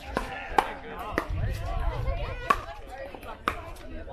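Pickleball paddles striking the hard plastic ball in a fast exchange at the net, a string of sharp pocks about one a second, the loudest about two and a half seconds in.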